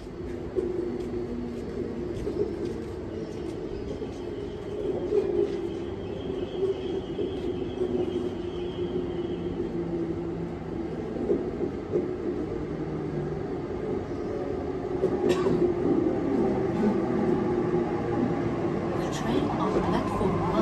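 Sydney Trains Waratah Series 2 electric train approaching and pulling into the platform, its motors whining on several steady tones. It grows louder over the last few seconds as it comes alongside, the whine bending in pitch as it slows.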